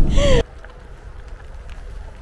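Low road and engine rumble inside a moving Mercedes-Benz Sprinter camper van's cabin, with a brief falling vocal sound, cut off suddenly about half a second in. Faint low outdoor background follows.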